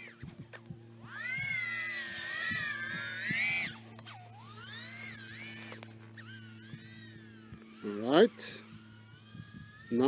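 Brushless motors and props of a 110mm micro FPV quadcopter whining in flight, the pitch rising and falling with throttle, with a quick upward sweep of a throttle punch near the end. A steady low electrical hum lies underneath.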